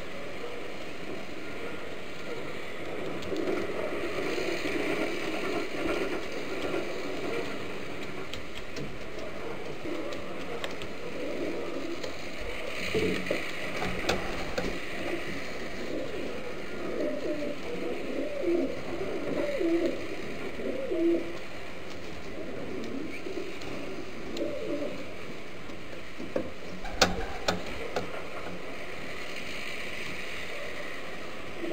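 Homing pigeon cooing: short, low, repeated coos, thickest through the middle, over a steady hiss. A few sharp knocks come near the end.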